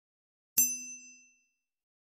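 A single bright, bell-like ding struck once about half a second in, ringing on with several clear tones and fading away within about a second: a logo sound effect.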